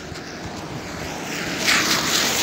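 Road vehicle passing close by, a hiss of traffic noise that swells and is loudest near the end.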